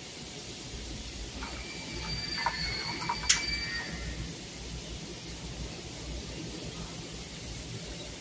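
Steady faint hiss and low hum of room noise, with a few light clicks and a brief faint high-pitched tone around the middle, while test leads are worked at an electrical control panel.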